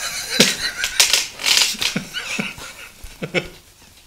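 Laughter: a run of short breathy bursts of laughing that dies away near the end.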